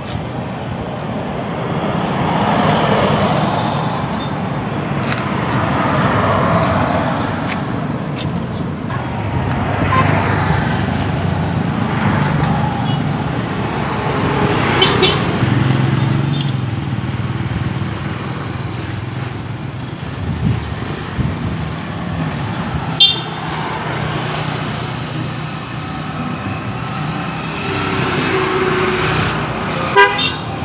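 Road traffic going by close at hand: engine and tyre noise swells and fades as vehicles pass, one every few seconds, with a few short sharp sounds in between.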